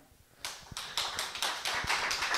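Audience applause starting about half a second in, a few separate claps quickly filling in to steady clapping that grows louder.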